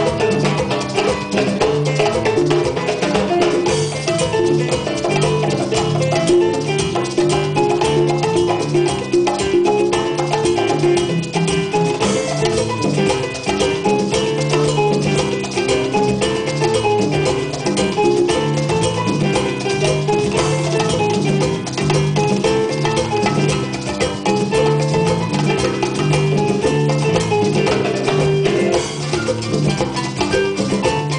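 Live Cuban band playing a salsa number: congas and other hand percussion over a repeating electric bass line, in a steady dance rhythm.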